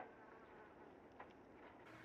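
Faint buzzing of flies over rotting food, barely above near silence.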